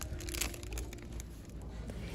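Faint crinkling of cellophane candy wrappers being handled, a few light crackles over quiet store room tone.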